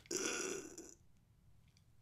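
A man's short, breathy vocal exhale as he stretches his arms overhead, lasting under a second.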